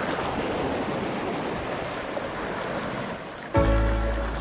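Shallow sea water sloshing and lapping, an even wash of water noise. About three and a half seconds in, music with a heavy bass cuts in suddenly and is the loudest sound.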